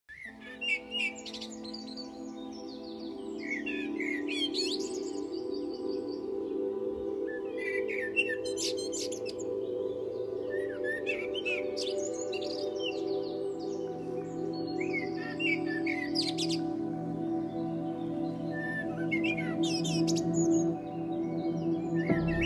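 Birds chirping and singing in short clusters every few seconds over a soft ambient music pad of long held notes.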